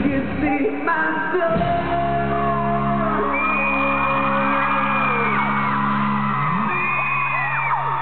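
Live pop-rock band holding a long sustained chord at the close of the song while the singer sings into the microphone, with high screams and whoops from the crowd over it.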